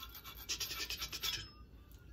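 Coping saw cutting across a dry tulsi (holy basil) twig by hand, a quick run of short rasping strokes that stops a little after halfway.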